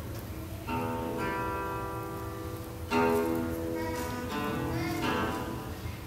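Acoustic guitar chords strummed and left to ring: one chord about a second in, a fuller one about three seconds in, then lighter strums that fade.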